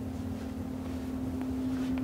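A steady low hum with a rumble beneath it, background noise that carries on unchanged, with a couple of faint ticks.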